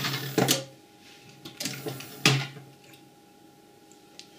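Small 12-volt geared motor running briefly to swing its arm between positions under relay control, with relays and switches clicking as a button is pressed and the limit microswitch stops the motor. There are two such bursts, one at the start and one about two seconds in.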